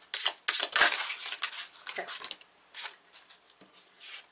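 Oracle cards being handled and drawn from a deck: a run of quick, crisp papery slides and flicks of card stock, densest in the first second or so, then a few sparser ones.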